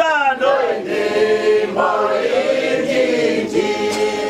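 A group of men and women singing a song together, their voices holding long notes and sliding between them.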